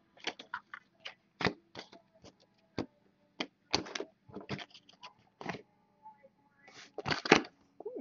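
Glossy chrome baseball trading cards being flipped and slid off a stack by hand: irregular short clicks and snaps, with a louder flurry about seven seconds in.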